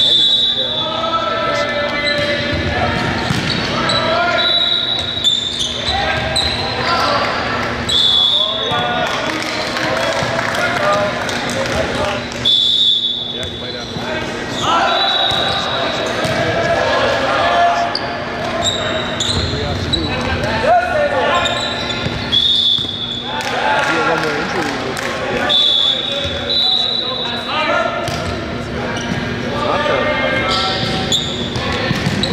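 Indoor volleyball play in a gymnasium: the ball being struck and bouncing on the hardwood floor again and again. Indistinct players' calls and voices echo through the hall.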